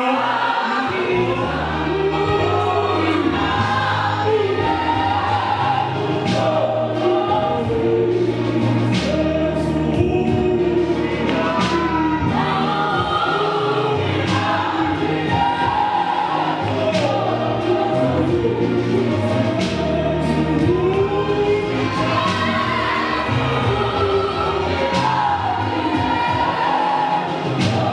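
A church congregation singing a gospel hymn together in chorus, many voices over a low sustained bass line.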